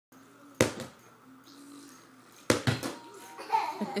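A toy ball being knocked and bouncing: two sharp knocks about two seconds apart, the second followed by a few quick rebounds. Laughter and voices come in near the end.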